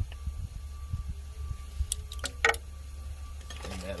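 Light metallic clicks and clinks from hand work on the open valve train of a Cat C15 diesel engine, with a short cluster of sharp clicks about two seconds in, over a steady low hum.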